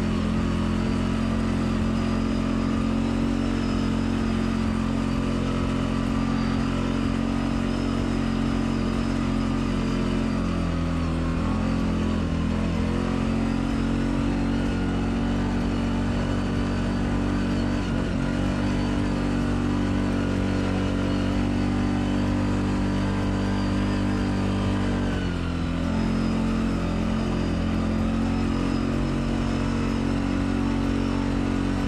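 CF Moto 520L ATV's single-cylinder four-stroke engine running steadily under load up a forest dirt track. The engine speed dips and picks up again briefly about a third of the way in and again near the end.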